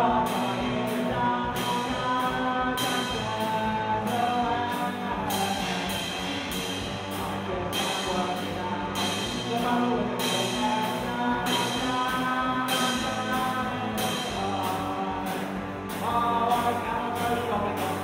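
Live punk rock band playing: two electric guitars over a drum kit keeping a steady beat on the cymbals, with a loud accent at the very start.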